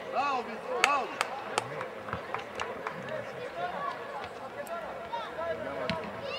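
Several voices shouting and calling out over each other on an outdoor football pitch, with a few sharp knocks about a second in.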